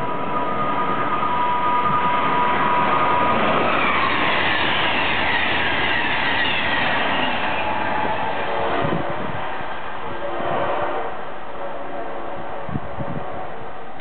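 Amtrak Crescent passenger train running through a station at speed: a high, steady whine drops in pitch about three and a half seconds in as the train sweeps past. The rushing wheel-and-rail noise then fades as the train recedes.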